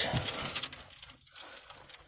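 Hinged aluminium checker-plate storage box door opened by hand: a short noisy scrape and rattle in the first second, fading to faint handling noise.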